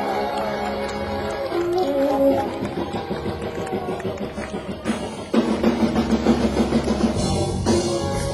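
Live blues band playing, with drum kit and instruments throughout; about five seconds in the full band comes in louder with a steady pulsing beat.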